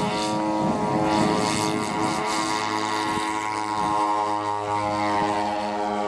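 Twin engines and propellers of a large radio-controlled Heinkel He 111 model running at high power on takeoff and climb-out, a loud steady drone whose pitch drops slightly about halfway through as the plane moves away.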